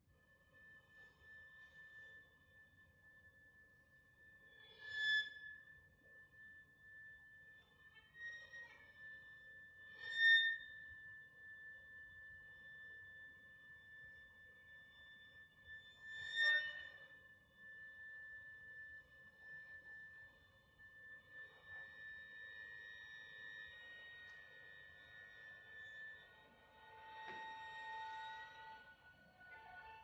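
String quartet playing quiet contemporary classical music: a long high held violin note over a soft lower sustained note, cut by three sharp accented attacks about five to six seconds apart. Near the end more instruments enter with further held notes, thickening the sound.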